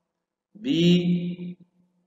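A man's voice saying the letter name "B" once, drawn out for about a second.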